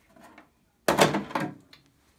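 Hard plastic wall piece of a Snake Mountain toy playset pulled free of the dungeon: one short scraping clatter about a second in.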